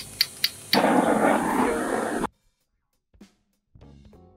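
Hand-held butane torch: its igniter clicks a few times, then the flame catches and runs with a loud rushing hiss for about a second and a half before being cut off abruptly. Faint music comes in near the end.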